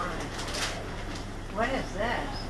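Indistinct voice sounds near the end, with a brief rustle about half a second in, over a low steady hum of shop background.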